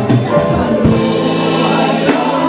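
A gospel vocal group singing in harmony over a band, holding long notes, with a drum hit near the middle.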